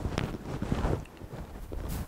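Wind rumbling on an outdoor microphone, with scattered faint clicks.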